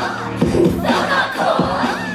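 Screamed, shouted voices over a backing track that holds steady low notes, with a couple of short hits, at a screamo rap concert.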